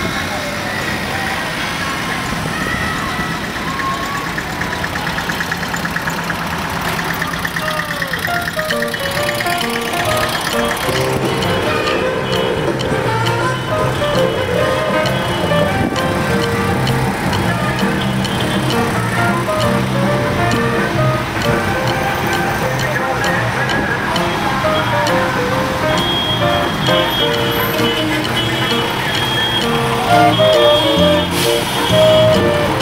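A convoy of vans and old trucks driving slowly past, their engines and tyres mixed with loud music whose notes stand out more clearly from about ten seconds in.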